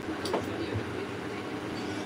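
Low, steady room noise of a small club between songs, with a faint click about a third of a second in; no music or singing.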